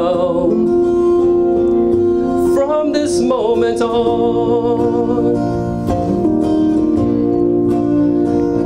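Music: a man singing a slow love ballad into a microphone, with acoustic guitar accompaniment. Long held notes, with a sliding vocal phrase about three seconds in.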